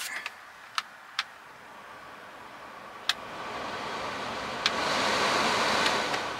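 VW T6 heater blower fan, on a newly fitted resistor pack, blowing air through the dashboard vents. The air rushes louder in steps as the fan control knob clicks up through its settings, four clicks in all. A rising fan speed on each setting shows the replacement resistor pack working.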